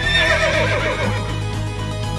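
A horse whinnies once, a wavering call that falls in pitch over about a second, over steady background music.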